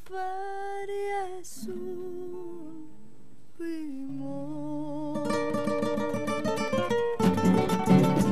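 Two acoustic guitars playing a traditional Mexican song, with a voice holding long notes over plucked chords. Near the end the guitars strum louder and fuller.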